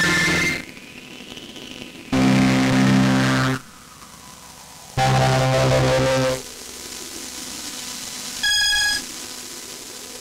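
Behringer Solina string-synth chords played through an OTO Machines BOUM: three held chords of about a second and a half each, starting and stopping abruptly, with a steady hiss between them. A short, bright high note sounds near the end.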